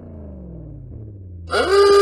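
Car engine winding down from a rev, its pitch falling steadily. About one and a half seconds in, a loud, steady pitched tone cuts in.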